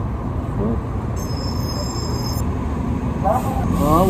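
City street traffic noise, a steady low rumble, with a brief high-pitched squeal of several tones lasting about a second, starting about a second in.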